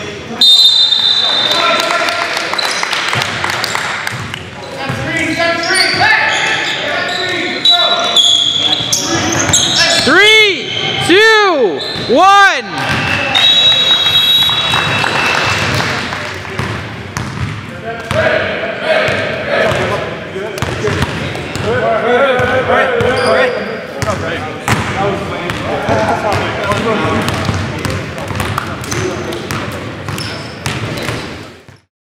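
Indoor basketball game in a gymnasium: a basketball bouncing on the hardwood court amid indistinct voices of players and spectators. A few short, high, steady whistle tones sound, and about ten seconds in come three loud squeaks that rise and fall in pitch.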